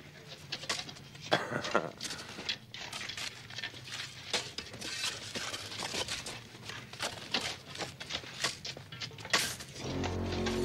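Several shovels digging and scraping into dirt at once, a continuous, irregular run of scrapes and knocks.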